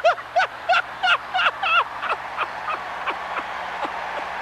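A man laughing heartily into a handheld microphone: a run of 'ha' bursts, about three a second, each dropping in pitch and growing fainter as the laugh winds down, over a steady background hiss.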